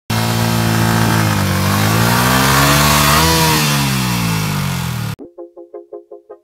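Yamaha R15's single-cylinder engine running, revved once: the pitch rises to a peak about three seconds in and falls back. The sound cuts off suddenly just after five seconds and quiet plucked-note music begins, about five notes a second.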